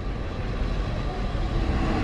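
Steady street noise with a vehicle engine running close by.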